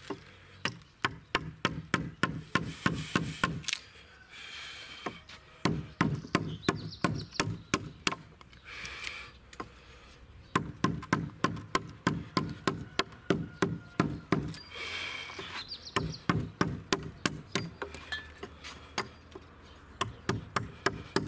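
Mallet blows driving a Stryi woodcarving gouge into wood, in quick runs of about three to four strikes a second, broken by short pauses.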